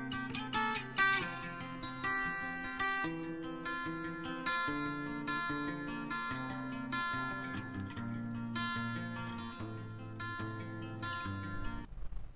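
Background music: an acoustic guitar picking a steady run of notes.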